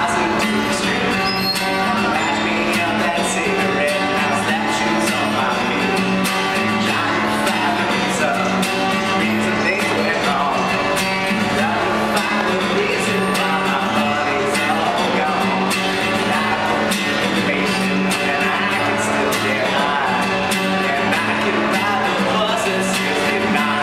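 A man singing while strumming an acoustic guitar, steady chords throughout.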